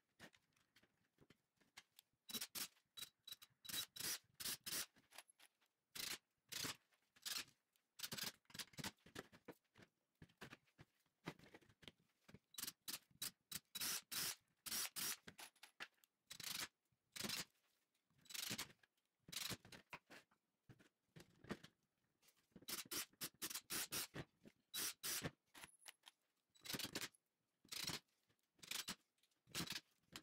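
Woodworking assembly sounds in many short, choppy bursts: pine blocks and 2x3s knocking and sliding on a table, a quick-grip bar clamp clicking as it is tightened, and brief runs of a cordless drill driving screws.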